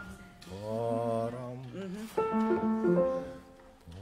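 A man's voice singing a short wordless musical phrase: a wavering line of notes, then a few held notes stepping in pitch.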